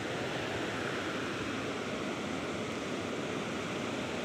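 Fast-flowing canal water rushing and churning, a steady even rush of turbulent water.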